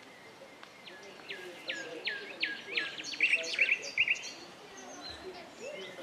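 A songbird singing from the trees: a run of about eight quick whistled notes, each sliding down in pitch, which speed up and end in a short, rapid flourish after about three seconds.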